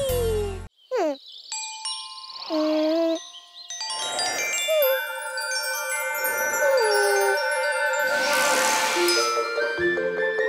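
The cartoon's theme music cuts off within the first second. A musical logo jingle follows, with sliding tones and bell-like chimes. From about four seconds in, many ringing chime tones overlap, with a shimmering swell about eight seconds in.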